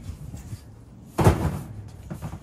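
Plastic storage totes being handled: one loud clunk about a second in, with lighter knocks and rustling around it.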